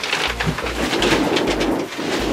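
Pigeons cooing, mixed with the rustle and knock of paper bundles and boxes being pulled off a wooden cupboard shelf.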